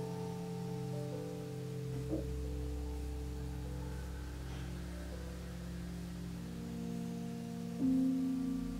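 Soft background music of slow, sustained held notes over a low bass, the chord shifting about two seconds in and again near the end.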